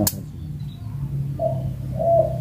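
A single sharp snip from a hand cutter worked in the branches of a serut bonsai. From about a second and a half in, a dove's low, steady cooing begins.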